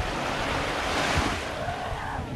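Small waves washing up onto a sandy beach, the hiss of the surf swelling to a peak about a second in and then fading. Wind buffets the microphone underneath with a low rumble.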